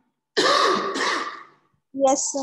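A person clearing their throat with two quick harsh coughs, one straight after the other.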